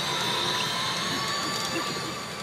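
Sound effects from a CR Urusei Yatsura pachinko machine during a reach animation, with steady high tones over the dense, unbroken din of a pachinko parlor.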